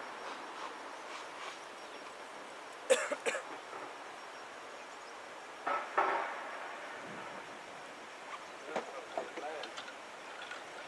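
Quiet outdoor background with a couple of sharp clicks about three seconds in and short snatches of a voice around six seconds and again near the end.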